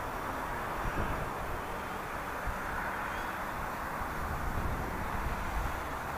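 Steady outdoor background noise: an even hiss with some low rumble underneath and no distinct events.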